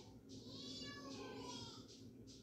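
A cat meowing: one long drawn-out call that rises and then falls in pitch, over a low steady hum.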